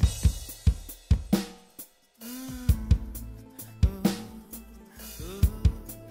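Sampled drum kit from a touchscreen drum app, with kick, snare and cymbal hits played in short fills over a recorded song's melody. The sound drops out briefly just before two seconds in.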